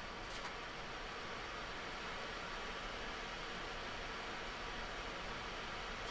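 Steady faint hiss of room tone, with one faint click about half a second in.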